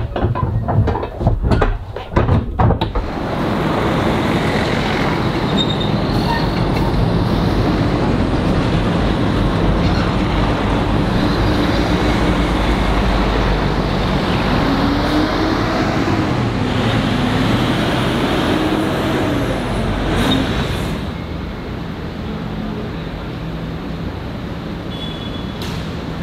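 Heavy diesel trucks hauling shipping containers through a container-port gate: a steady traffic rumble with engines running and a tone that rises and falls midway. It opens with a few sharp clanks and eases off near the end.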